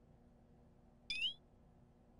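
A single short, high-pitched chirp rising in pitch, about a second in, against otherwise near silence.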